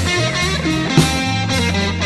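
Blues song instrumental: electric guitar playing over bass guitar and drums, with a drum hit about halfway through.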